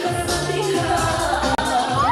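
Dance music playing at a party, with a steady bass and a held melody line. A split-second dropout comes about three quarters of the way through.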